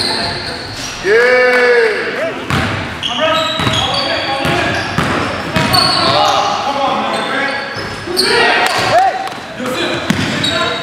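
Basketball game sounds on a hardwood gym court: a ball bouncing, short rising-and-falling sneaker squeaks, and players calling out, all echoing in the hall.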